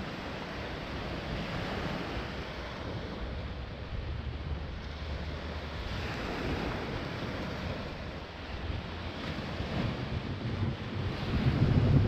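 Small waves washing onto a sand-and-pebble shore, with wind buffeting the microphone as a steady low rumble that grows stronger near the end.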